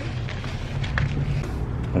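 Steady low rumble of a car engine running close by, with a couple of faint clicks.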